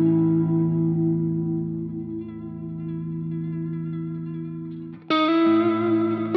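Solo electric guitar on a Fender Stratocaster: a chord rings and slowly fades for about five seconds, then a new chord is struck, with another change of notes just after.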